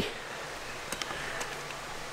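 Steady low background noise of the outdoors with two or three faint clicks, likely small handling sounds.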